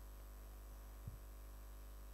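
Faint steady electrical mains hum from the microphone and sound system, with one brief soft knock about a second in.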